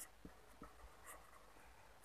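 Faint scratching of a pen writing on paper, in short strokes.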